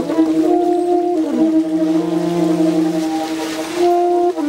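Free-improvised jazz: a saxophone holds long notes over a bowed double bass, with a slow downward slide in pitch about a second in that settles onto a steady low note. A soft cymbal shimmer comes in near the end.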